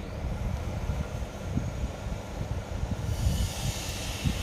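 Low, uneven background rumble, with a hiss that comes up about three seconds in.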